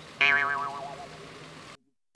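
A cartoon-style 'boing' sound effect: a single pitched tone that starts suddenly just after the start, glides downward in pitch and fades away over about a second and a half.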